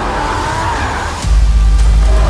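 Racing-vehicle sound effects with screeching tyres and skidding, mixed with trailer music. A deep bass boom hits a little past halfway and is the loudest thing.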